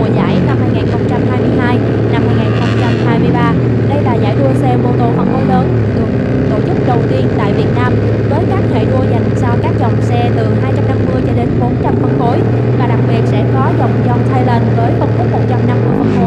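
150cc sportbike engine idling on a race starting grid, picked up by an onboard camera, with short throttle blips now and then: a quick rev near the start, a held rise around three seconds in, another blip around five seconds and one at the end. Other race bikes' engines running around it.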